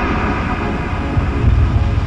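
Electronically processed logo music: dense held tones over a heavy low rumble that swells about three-quarters of the way through.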